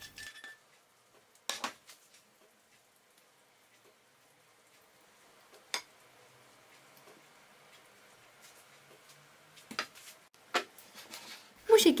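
A spoon knocking and scraping against a glass pie dish while spreading thick cherry filling: four short, sharp clinks spread through an otherwise faint stretch.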